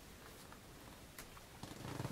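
Quiet room tone with a few faint, brief clicks.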